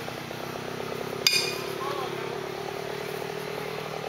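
A small engine on the tent crew's machinery running steadily at a constant speed, with one sharp metallic clink a little over a second in.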